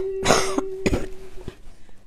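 A woman coughing into her hand, two hard coughs about half a second apart and a lighter one after, while a held sung note carries on underneath.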